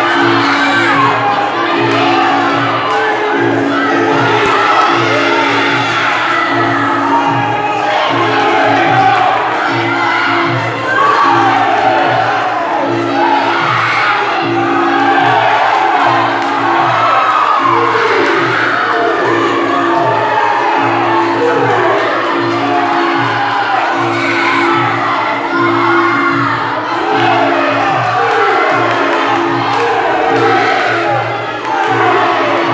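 Spectators shouting and cheering throughout a Muay Thai bout, over music with a steady repeating beat.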